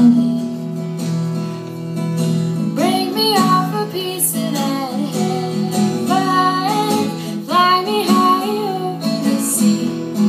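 Acoustic guitar strummed steadily under a female voice singing, in three long melodic phrases that begin about three, six and seven and a half seconds in.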